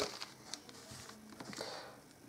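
Faint plastic clicks and a brief scrape from a 5x5 puzzle cube as its inner right slice is turned by hand.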